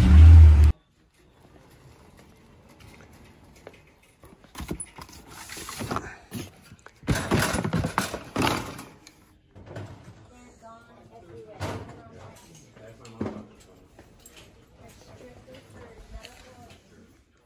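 A vehicle engine runs loudly for under a second and cuts off abruptly. It is followed by rattling and knocking from a wire shopping cart and a boxed tool being handled, with voices in the background.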